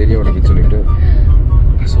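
People talking inside a moving car's cabin, over a steady low rumble of road and engine noise.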